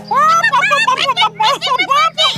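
High-pitched cartoon character voice chattering in quick, wavering syllables with no clear words, over a low held tone of background music.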